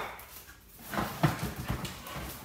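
Two Rottweilers play-wrestling: claws clicking and scrabbling on tile floor and leather couch, with a brief dog vocal sound about a second in.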